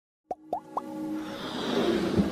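Electronic intro sting for an animated logo: three quick upward-gliding pops about a quarter second apart, then a swelling synth build-up that grows steadily louder.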